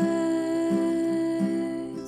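A woman singing one long held note over a strummed Crafter acoustic guitar, as a live folk song.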